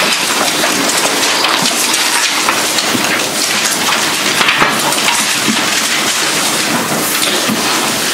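Rustling of many thin Bible pages being turned at once as a congregation looks up a chapter: a dense, steady crackle like rain.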